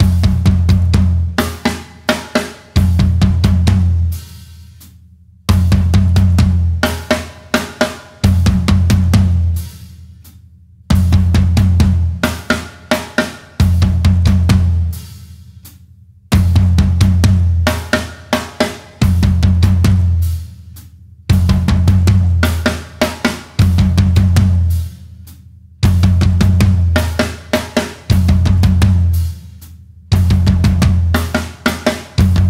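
Drum kit playing a 6/8 garba groove, with toms standing in for the low and high sides of a dhol, over bass drum and a hi-hat opening and closing to imitate bells. Short, punchy phrases repeat steadily, with a brief pause after every second phrase.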